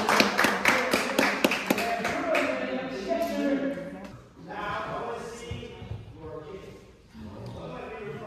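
Voices in a large, echoing hall. In the first two seconds a quick run of sharp taps or claps sounds over them, then the sound drops to quieter talk.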